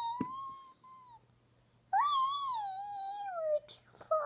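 A toddler's high-pitched, drawn-out "woo" vocalising, the pretend race-car noise she makes at play. One held note ends about a second in. A longer one starts about two seconds in, rises slightly, then slides down in pitch.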